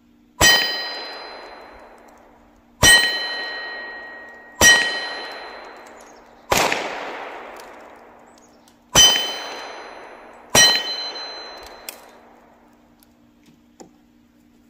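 Six shots from a .22 rimfire single-action revolver, spaced roughly one and a half to two and a half seconds apart. Each shot is answered by the steel plate target ringing on impact, a bright clang that fades over a second or two.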